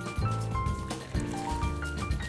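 Background music: a melody of held notes over a steady bass line.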